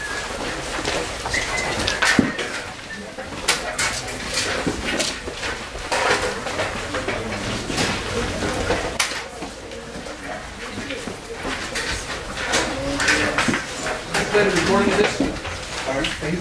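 Band-room hubbub: students talking among themselves over rustling sheet music, with scattered knocks and clicks from stands and instruments being handled.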